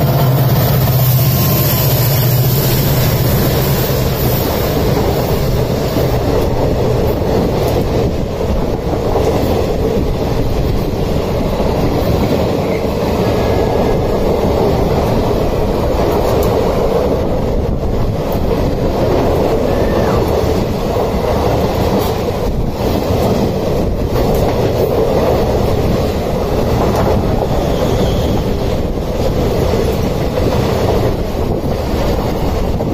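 An express train passing at close range on the adjacent track: the low engine hum of its diesel locomotives fades over the first several seconds, then the coaches roll by with a steady rumble and wheel clatter.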